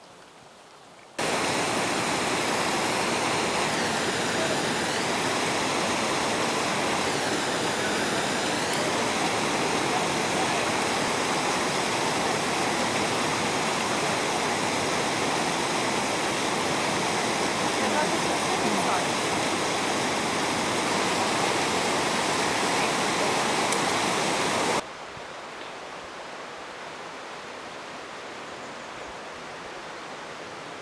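A fast mountain stream rushing over rocks, loud and steady. It starts abruptly about a second in and cuts off sharply near the end, leaving a much fainter hiss.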